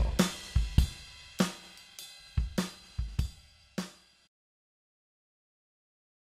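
Drum kit playing the closing fill of a song's backing track: about a dozen kick, snare and cymbal strokes at an uneven pace, growing fainter, then cutting off suddenly a little over four seconds in.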